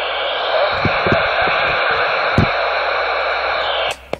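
Steady static hiss from a Ranger 2950 radio's speaker as a signal opens the receiver on the channel. It cuts off suddenly near the end when the transmission drops. A few faint low thumps sound under it.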